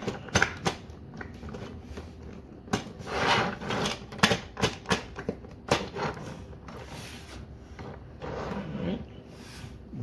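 Hard plastic toy parts of a Tobot Agent Titan clicking, knocking and rattling as the toy's arms are moved and it is set down on a table. The clicks come irregularly, with brief rustling between them.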